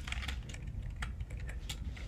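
Typing on a computer keyboard: a run of quick, irregular keystrokes.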